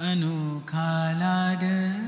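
A man's voice singing long held notes in a slow Indian classical style. It slides up into the first note, breaks off briefly about two-thirds of a second in, and then carries on steadily.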